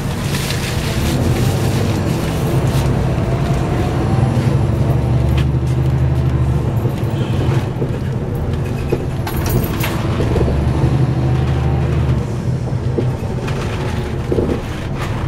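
Interior noise of a NABI 416.15 suburban-style transit bus on the move, heard from a seat near the back: a steady low engine and drivetrain drone that grows heavier twice, around the middle and again near the end. A brief rattle comes about two thirds of the way through.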